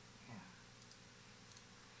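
Near silence: room tone, with a faint spoken "yeah" near the start and a few faint clicks about a second in.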